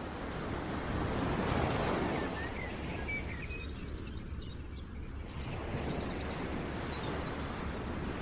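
Steady outdoor background noise, a rushing hiss, with short high bird chirps and quick trills over it for most of the stretch.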